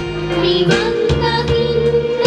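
A children's choir singing a Sinhala Buddhist devotional song in unison into microphones, over instrumental backing with a steady beat.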